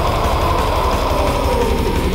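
Heavy metal song with a long, harsh screamed vocal held over distorted guitars and rapid low drum beats.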